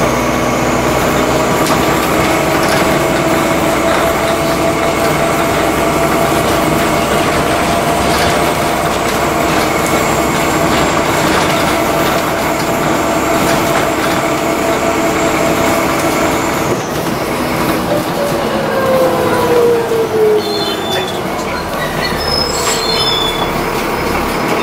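Alexander Dennis Enviro400 double-decker bus driving, heard from inside on the lower deck: a steady whine from the drivetrain over engine and road noise. The whine falls in pitch about 19 seconds in.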